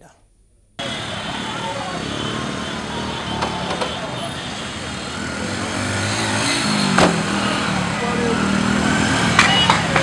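Busy street noise: motorcycle and vehicle engines running among a crowd's voices. An engine hum wavers in the second half, and there is one sharp click about seven seconds in.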